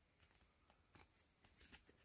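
Near silence, with a few faint soft clicks of trading cards being slid and flipped through a pack, about a second in and again near the end.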